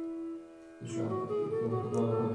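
Bina harmonium playing sustained chords. A held chord fades out about half a second in, and after a brief quieter gap a new chord starts just under a second in.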